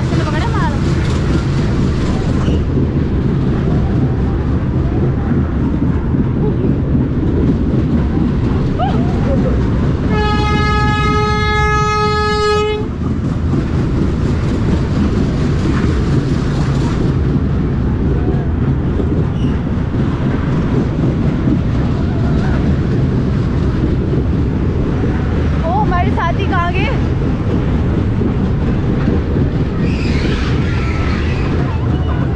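Fairground dragon train ride running along its track, a continuous loud low rumble and rattle of the cars. About ten seconds in, a steady horn tone sounds once for roughly two and a half seconds.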